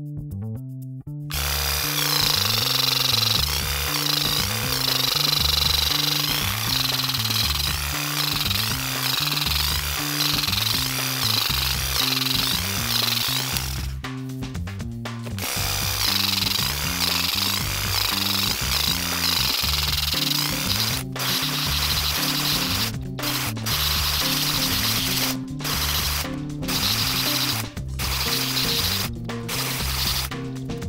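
Musashi WE-700 electric weeding vibrator buzzing as its vibrating blade is worked into clover and turf to loosen and lift the roots. It starts about a second in and stops briefly several times in the second half, over background music.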